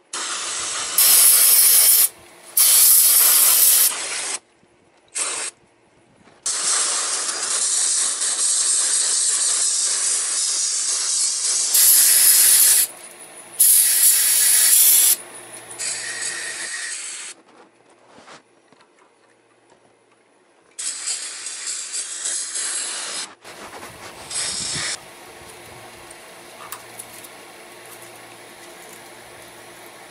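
Aerosol carburetor cleaner sprayed in a string of hissing bursts, some short and some held for about five seconds. The last few seconds are fainter as the can is used up.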